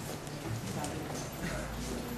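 A knife carving a block of carrot into a butterfly shape, making a few light, irregular cutting clicks over a murmur of room chatter.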